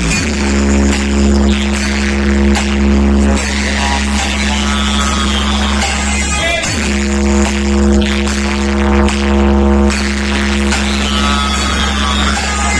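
Loud music played through a DJ truck's stacked bass cabinets and horn speakers, with heavy, continuous bass under long held tones. The tones break off briefly about six and a half seconds in with a short glide, then resume.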